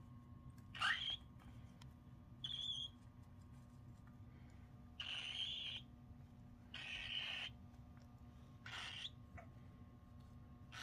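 Young cockatiels giving short, harsh calls, five in all, a second or two apart, the middle ones lasting most of a second, over a faint low steady hum.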